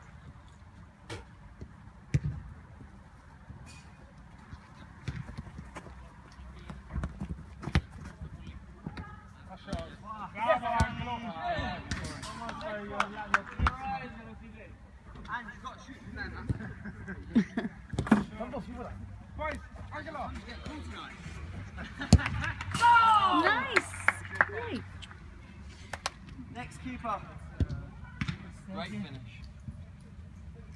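Futsal ball being kicked and bouncing during play: sharp, irregular thuds scattered throughout, with players shouting, loudest in the middle and again about three-quarters through.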